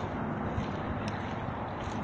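Steady outdoor background of distant highway traffic, an even hiss with a low rumble, picked up on a phone microphone, with one short click about a second in.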